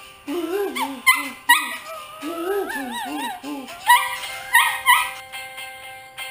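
A small dog howling along to a pop song: wavering, sliding howls for the first few seconds, then three sharper, higher cries about four to five seconds in, with the song's held notes carrying on underneath.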